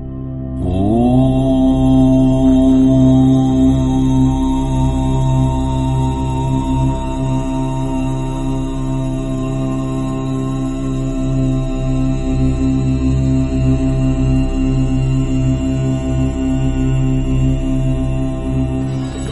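Devotional mantra chanting: a voice slides up into one long held note about half a second in, over a steady drone.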